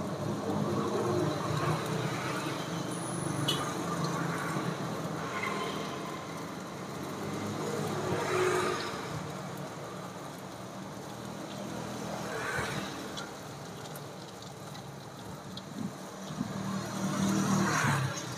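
Sempolan skewers of tapioca-starch dough deep-frying in a pot of hot oil with a steady sizzle. Motor traffic passes on the road alongside, swelling louder a little after halfway.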